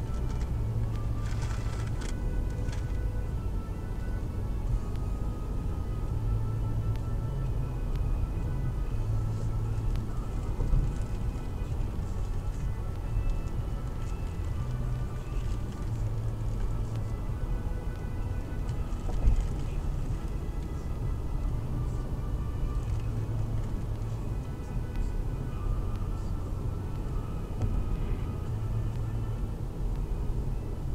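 Steady road and engine rumble inside a moving car, with quiet music playing over it.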